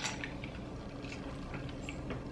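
Faint sips of cola from a plastic bottle and an iced glass, with a short sharp sound right at the start and a few light clicks after it.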